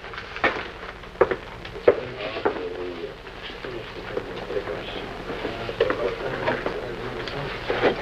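A few sharp clicks and knocks in the first two and a half seconds, then lighter ticks and handling noise, over faint murmured voices and a low steady hum.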